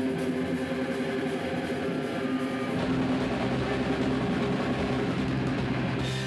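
Live rock band playing loud with distorted electric guitars and drums, the start of a song; a low bass comes in about three seconds in.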